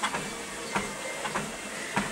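Fitnord treadmill running steadily, its motor and belt making an even hum, with footfalls landing on the belt about every two-thirds of a second.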